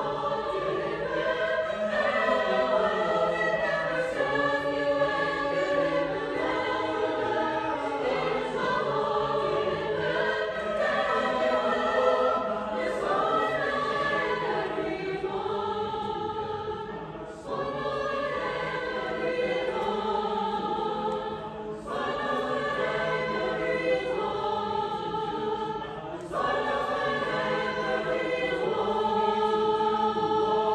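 Mixed choir of men and women singing sustained chords, with short breaks between phrases a little past halfway and twice more later on.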